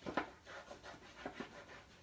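Faint rustling and soft taps of cardstock being handled and pressed flat while liquid glue is squeezed onto it, with a couple of sharper clicks just after the start.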